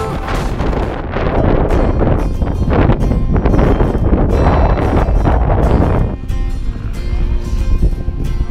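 Wind buffeting an outdoor microphone in a heavy, gusty rush that eases off after about six seconds, with faint music underneath.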